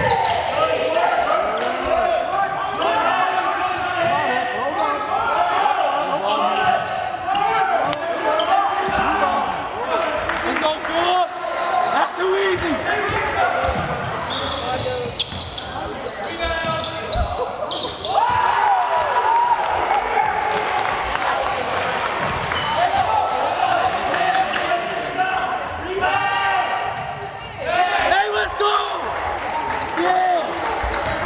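Basketball game in a gym hall: a ball dribbled on the hardwood court, with indistinct shouts and calls from players and spectators throughout.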